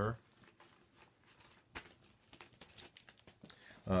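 Faint rustling and handling noises of a vinyl record and its sleeve being moved, with one sharper click a little under two seconds in and light crinkling toward the end.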